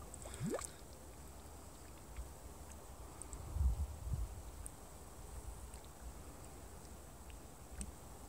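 Faint bubbling of a mud volcano's pool of liquid mud, under wind rumbling on the microphone, with a louder low swell about three and a half seconds in.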